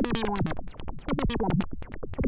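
Behringer 2600 semi-modular analogue synthesizer sounding short pitched notes that slide down in pitch, three or four times, over a rapid run of sharp clicks.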